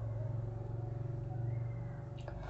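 A faint, steady low hum of background noise, swelling slightly in the second half.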